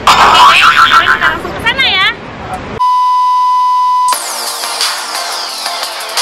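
Edited-in sound effects: a loud excited voice, then a wobbling cartoon boing, then a steady high beep held for about a second and a half. The beep is cut off by a falling whoosh that leads into electronic music.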